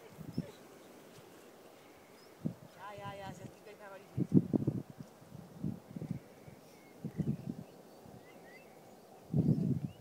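An animal's wavering, pitched call lasting about a second, about three seconds in, with soft, scattered low sounds before and after it.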